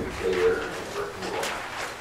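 Indistinct, low murmured speech, with short rustles of paper.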